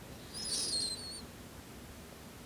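A bird's brief, faint, high-pitched warbling call, under a second long, starting about a third of a second in.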